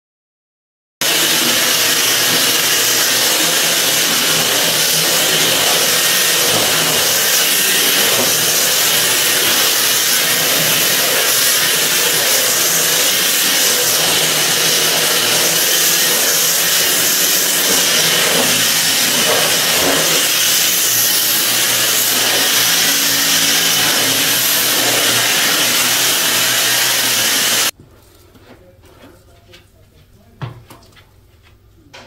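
Cordless stick vacuum cleaner running at a steady pitch, switching on about a second in and cutting off suddenly near the end, after which only faint knocks remain.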